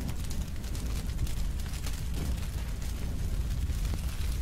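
A small open fire of wood and cardboard burning in a shallow metal pan, crackling irregularly over a steady low rumble.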